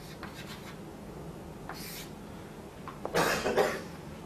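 A person coughs near the end, a short noisy cough in two bursts, after faint chalk strokes on a blackboard in the first second.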